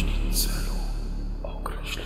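Animated logo intro sound design: a deep bass tone slowly fading, with short airy whooshes about half a second in and again near the end.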